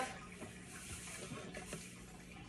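Faint hiss of table salt being poured, with a few light ticks.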